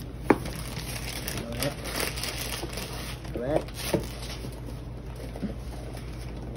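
Gift-wrapping paper crinkling and rustling as a wrapped present is handled and its paper picked at, in short bursts with a sharp click near the start.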